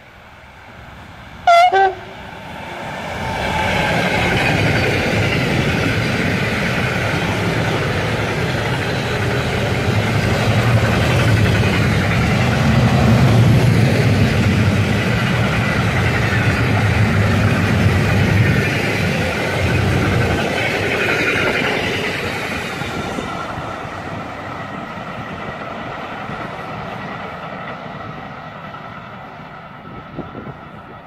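A freight train of car-transporter wagons behind an electric locomotive passing close at speed. A short, loud horn blast sounds about one and a half seconds in; the running noise of the wagons then builds over a couple of seconds, holds steady for about twenty seconds and fades away toward the end.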